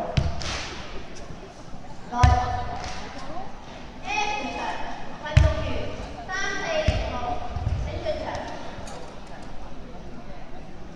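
Foot stamps of a Chen-style tai chi performer on a wooden sports-hall floor: about five heavy thuds at uneven intervals, the loudest about two seconds in and near the middle.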